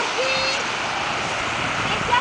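Small waves breaking and washing up the beach, with wind on the microphone, a steady rushing noise. A brief distant voice calls out about a quarter of a second in.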